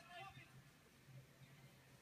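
Near silence: faint room tone with a low steady hum, and the tail of a faint voice in the first half second.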